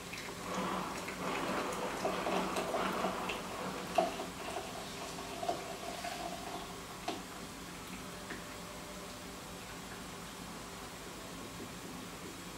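Herbal tea poured from a saucepan through a small mesh strainer into a glass Kilner jar: liquid trickling, louder in the first few seconds and then thinning out, with a few light clinks.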